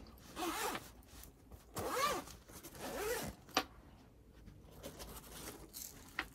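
Zip of a fabric packing cube being pulled open around its edge in three long rasping strokes about a second apart, with a sharp click a little after halfway.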